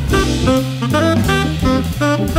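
Jazz trio playing a swing tune: a saxophone plays a run of short notes over organ bass notes and a drum kit played with sticks.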